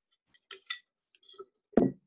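Hand rummaging through folded paper slips in a jar, with light clinks and rustles, then a single dull thump near the end.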